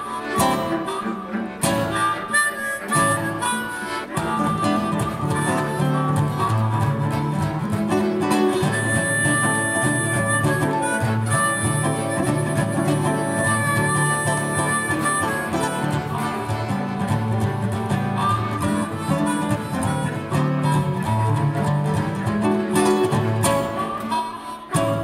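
Live instrumental folk music: a harmonica carries the melody over acoustic guitar and accordion, holding one long high note in the middle.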